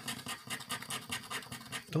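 Edge of a casino chip scraping the scratch-off coating from a lottery ticket in quick back-and-forth strokes, several a second.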